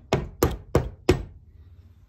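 Four sharp taps in just over a second, driving a glued wooden dowel into a drilled hole in a wooden axe handle to pin an internal drying crack.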